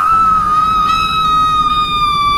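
A woman's loud, shrill scream held on one long, steady high note, sinking slightly in pitch: a monster screaming into someone's ear.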